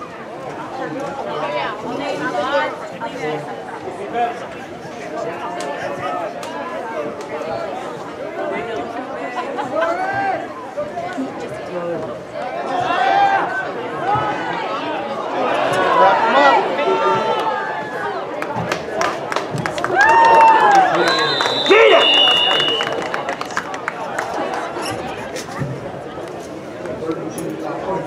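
Crowd of football spectators chattering, with louder shouts and cheers as a running play unfolds. A short shrill whistle blast sounds about two-thirds of the way through, typical of a referee whistling the play dead.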